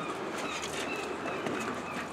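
Quiet outdoor town-street ambience: a steady background of distant noise with a few faint high chirps.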